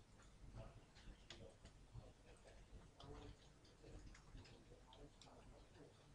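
Near silence: faint room tone with scattered faint ticks and clicks at uneven intervals.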